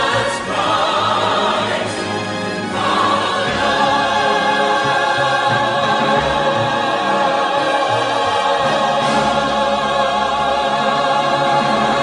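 Choral music: voices sing long held chords with vibrato, with a change of chord about three seconds in.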